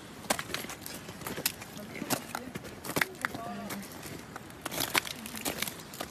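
Irregular crunching and crackling clicks of movement on glacier ice, with a faint voice briefly in the middle.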